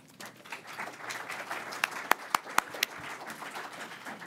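Audience applauding, with a few louder single claps in the middle.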